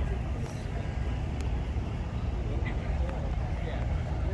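Outdoor crowd ambience: faint, distant voices over a steady low rumble, with a few light clicks.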